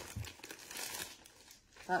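Thin clear plastic packaging crinkling as it is pulled open around a lunch bag, fading out after about a second.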